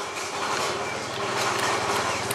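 A steady, low engine-like hum with no rise or fall, from a motor running in the background.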